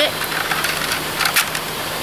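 Steady rushing of river water, with a few faint clicks a little past halfway and a low steady hum underneath.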